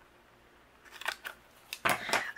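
A sheet of foam adhesive squares being handled on a craft mat: a few light crinkly clicks from about halfway, then a sharper click just before the end.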